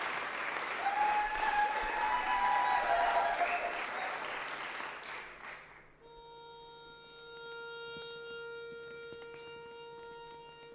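Audience applause with cheering that dies away about five seconds in. It is followed by one steady reed note from a pitch pipe, held for about four seconds, giving the quartet its starting pitch.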